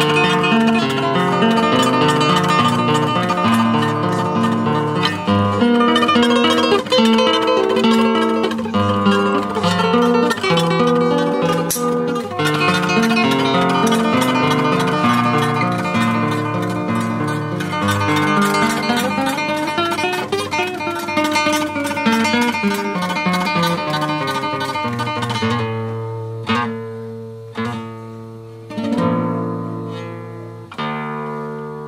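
Nylon-string classical guitar played fingerstyle, a continuous flow of plucked notes with a run of notes climbing and then falling back. Near the end it slows to a few separate chords left to ring out.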